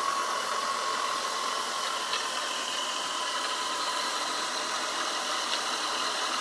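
Small 1930s steam turbine with high- and low-pressure stages running steadily on steam at about 50 psi: a constant rushing hiss with faint high steady tones in it.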